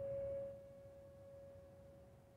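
The last note of a Petrof grand piano ringing on and slowly dying away, a single pure tone fading to near silence: the end of a solo piano piece.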